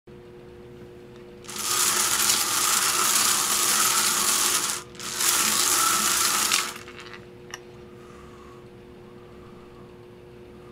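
Hard balls rattling and tumbling inside a hand-cranked wire bingo cage as it spins, in two spells of about three seconds and two seconds with a brief break between. A single click follows about a second later.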